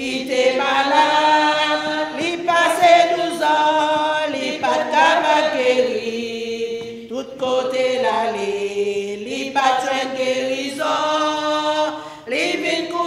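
Women's voices singing a slow hymn without accompaniment, long held notes gliding from one to the next, with brief breaks between phrases.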